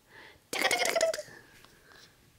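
A single short, breathy vocal sound about half a second in, like a sneeze or a squeak, with a faint trailing tone after it.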